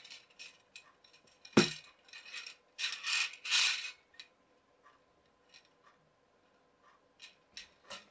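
Metal tension poles being handled and fitted together: a sharp knock about one and a half seconds in, then a second or so of metal scraping as one pole slides inside the other, followed by scattered light clicks and taps.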